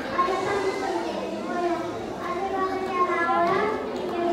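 A crowd of young children chattering and calling out together, many voices overlapping with no single speaker standing out.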